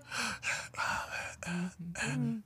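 A man's breathy puffs and sighs, several short breaths of air one after another, then a couple of low murmured hums near the end.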